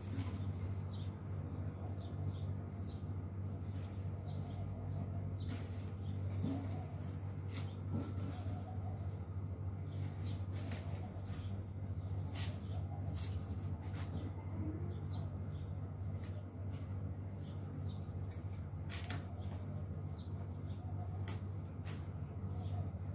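Soil being scooped and packed into a plant pot with a small metal trowel, giving scattered clicks and scrapes over a steady low hum, with faint bird chirps in the background.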